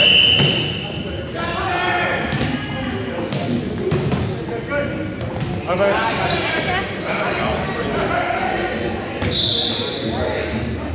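Volleyball rally on a gym's hardwood court: the ball is struck by hands a few times, sneakers squeak briefly on the floor, and players' voices call out, all echoing in the large hall.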